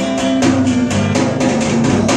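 A small band rehearsing live in a room: guitar playing over a drum kit beat with bass drum and regular sharp drum hits.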